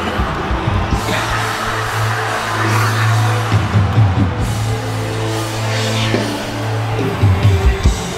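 Live worship band music with a long held low bass note. The quick low drum beats drop out about a second in and come back about seven seconds in, over the raised voices of a congregation.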